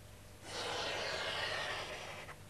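A stick of charcoal scraping across drawing paper in one long, even stroke, starting about half a second in.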